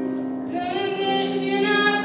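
A woman singing a Christian hymn solo into a microphone, holding long notes, with piano accompaniment.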